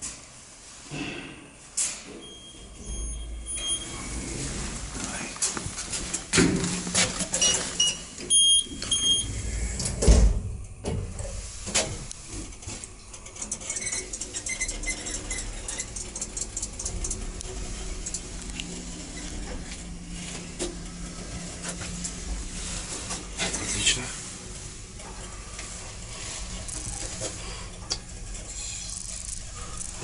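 Electric passenger lift in use: short high electronic beeps twice, knocks and clunks of the doors and car, then the car riding with a steady low hum that stops about 24 seconds in.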